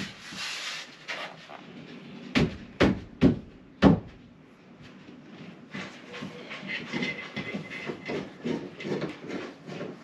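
Four sharp knocks on a plywood bulkhead panel as it is fitted against a boat's hull, about half a second apart, a little over two seconds in. After them come softer, quicker scraping sounds against the wood.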